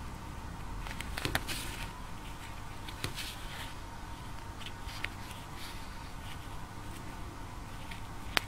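Faint handling sounds of crocheting: a steel crochet hook and crochet thread being worked around a foam egg, with a few light clicks and rustles over a steady low hum.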